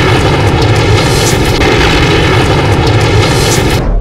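A loud, steady roaring sound effect, dense and without a clear pitch, that cuts off suddenly just before the end.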